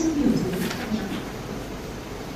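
A person's voice through a microphone trailing off in a low, drawn-out hum that falls in pitch and fades within the first half second, then quiet room noise.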